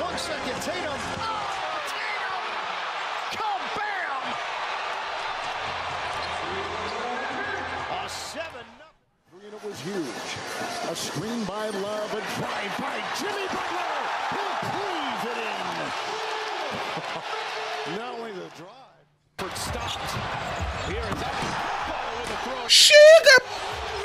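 Basketball game broadcast sound: arena crowd noise with a ball dribbling and sneakers squeaking on the hardwood court. The sound drops out briefly twice, and a loud voice breaks in near the end.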